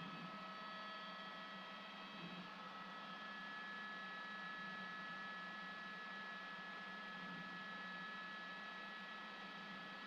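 Steady hiss with a low hum and several constant high-pitched whining tones: a news helicopter's cabin noise picked up through the crew's open headset microphone.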